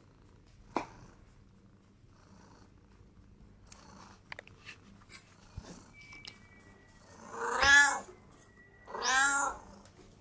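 A domestic cat meowing twice near the end, two loud drawn-out calls that rise and fall in pitch, about a second and a half apart: begging for more food at the table.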